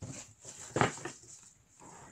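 Packaging being handled: short rustles and scrapes, the loudest just before the middle.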